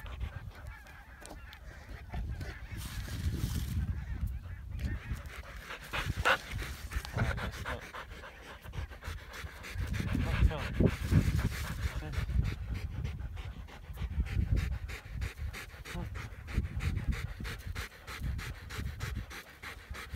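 Alaskan malamute panting, over an uneven low rumble.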